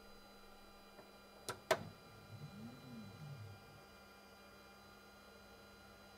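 Faint steady hum of an xTool M1 Ultra diode laser engraver with an RA2 Pro rotary. About a second and a half in there are two sharp clicks, then a low stepper-motor whine rises and falls in pitch over about a second as the machine moves through a framing pass.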